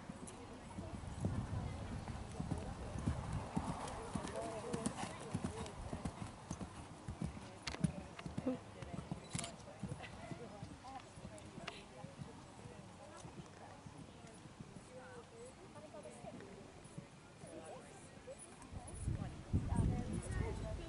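Hoofbeats of a horse cantering on grass turf, with dull, irregular thuds. They grow louder near the end.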